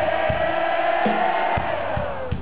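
Live rock band playing through a large outdoor PA, recorded from within the audience: one long held note over a few drum hits, dropping in pitch near the end.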